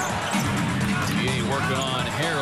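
Basketball dribbled on a hardwood court amid arena crowd noise, with music playing over it.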